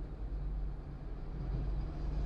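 A steady low vehicle rumble with a faint even hum, heard from inside a car's cabin.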